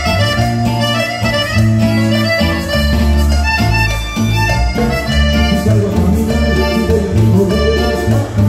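Live Latin dance band playing an instrumental passage through PA speakers: a pulsing bass line and percussion under an accordion-like lead melody.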